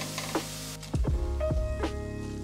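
Enoki mushrooms and cherry tomatoes sizzling in a frying pan as they are sautéed and turned with tongs, under background music. The sizzle drops away sharply a little under a second in.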